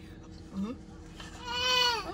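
A person's closed-mouth "mm-hmm": a short low "mm" and then, about a second in, a long, high-pitched, drawn-out "hmm" that rises and falls.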